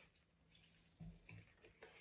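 Near silence, broken by a few faint soft handling sounds about a second in and again near the end as a tarot card is picked up off a cloth-covered spread.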